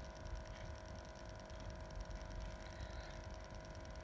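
Quiet room tone: a steady low hum with a faint low rumble underneath.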